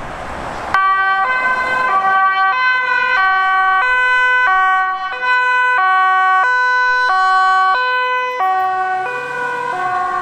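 Dutch police car's two-tone siren switching on abruptly about a second in, alternating between a high and a low tone roughly twice a second, dropping slightly in pitch near the end as the car drives past.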